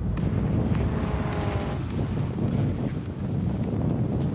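Wind noise on the microphone over the sound of distant Mini racing cars approaching, with one engine's note rising briefly about a second in.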